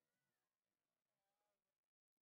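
Near silence: the audio track has dropped out entirely.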